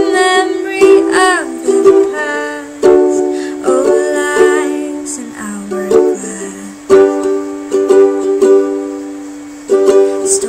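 Ukulele strumming chords, with repeated accented strums.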